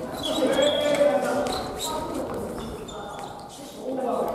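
Badminton rally on a wooden gymnasium floor: short high sneaker squeaks as players move, a few sharp shuttlecock hits off rackets, and players' voices, all echoing in the hall.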